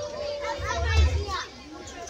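Group of children chattering and calling out together in a large room, their high voices overlapping.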